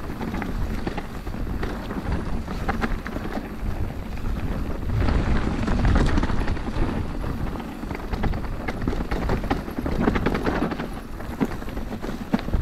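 Orbea Occam mountain bike rolling fast down a dirt trail strewn with dry leaves: continuous tyre noise with a low rumble of wind on the microphone and many small clicks and rattles of chain and frame over bumps, loudest around the middle.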